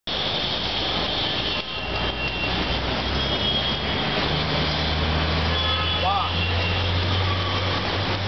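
Steady city traffic noise with a vehicle engine's low hum that grows stronger about halfway through, and a brief high chirp near the end.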